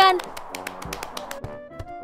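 A rapid, even run of light clicks or taps, several a second, used as a cartoon sound effect over quiet background music.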